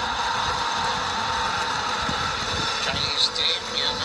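Steady arena crowd noise from a sports broadcast, played through a television's speaker, with a few brief, sharper sounds starting about three seconds in.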